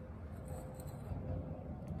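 Quiet background noise with a faint steady hum and no distinct event.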